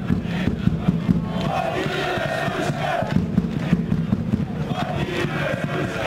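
A crowd of football supporters chanting together in held, sung phrases, with sharp loud hits scattered through.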